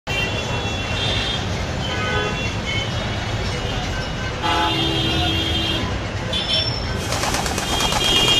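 Town street traffic: a steady low rumble of vehicles with several short vehicle-horn toots, and a noisy rush starting about seven seconds in.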